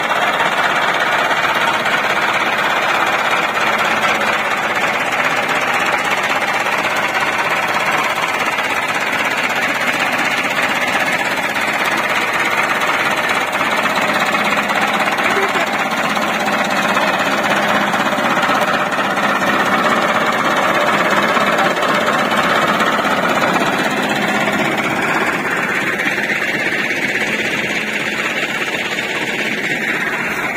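Massey Ferguson 385 diesel tractor engine running close to the microphone, a steady, dense clatter that holds at an even level throughout.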